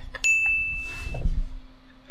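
A single bright, bell-like ding that sets in sharply about a quarter second in and rings on one high tone for about a second before stopping.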